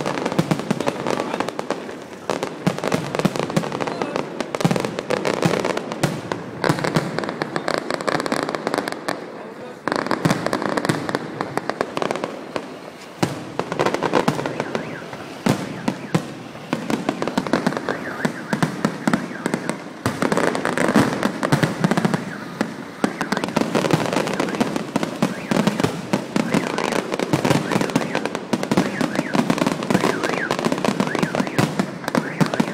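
Fireworks display: a dense, continuous barrage of rapid crackling pops and bangs from bursting shells and crackle effects, easing briefly about ten seconds in and again a few seconds later.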